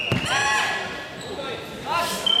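A thud on the mat as two karateka clash in kumite, followed by a loud, high-pitched shout and another just before the end.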